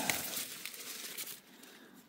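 Dry corn husk and leaves rustling and crackling as an ear of corn is picked from the stalk by hand, dying away after about a second and a half.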